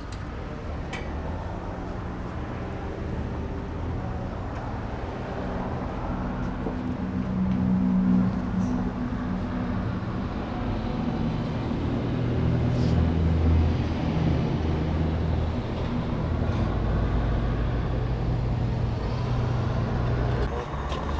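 A car engine running steadily, a low hum whose pitch shifts slightly now and then, with a few faint clicks over it.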